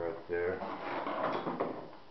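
A brief voice, then about a second of rustling, scraping noise as a composite part is handled and rubbed against the workbench.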